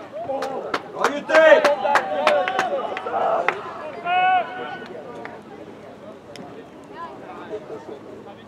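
Men's voices shouting on an outdoor football pitch, with a quick series of sharp knocks in the first three seconds. After about five seconds it falls quieter, with only faint distant voices.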